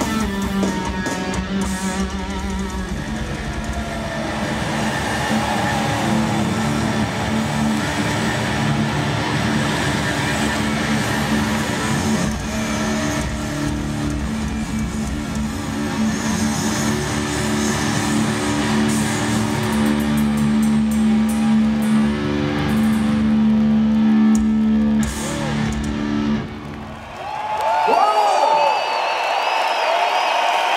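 Rock band playing live in an arena, distorted electric guitars and drums on a long held ending, which stops about 26 seconds in. The crowd then cheers, whoops and whistles.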